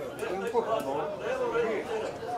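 People talking near the microphone, several voices overlapping in casual chatter.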